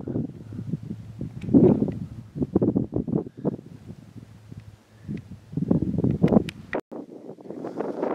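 Gusty wind buffeting the camera microphone in uneven rumbling bursts, with a few sharp clicks. The sound cuts out abruptly for a moment near the end.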